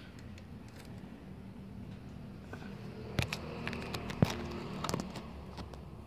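A few sharp metallic clicks and rattles from a bicycle chain and rear derailleur being handled during cleaning, the loudest a little after four seconds in, over a steady low background hum.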